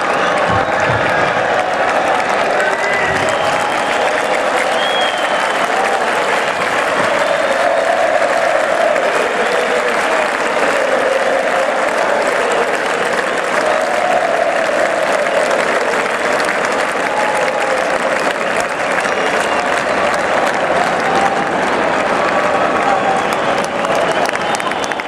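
A stadium crowd of thousands applauding and cheering without a break, with massed voices chanting together in a wavering sing-song.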